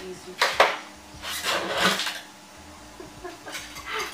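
Steel acoustic-guitar strings being handled during a string change: a few sharp metallic clicks about half a second in, then about a second of scraping hiss.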